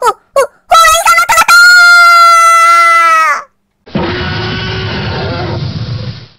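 Cartoon sound effects: two quick falling swishes, then a long, loud, high held scream that wavers at first and drops away at its end. A rough, growling tiger roar follows in the second half.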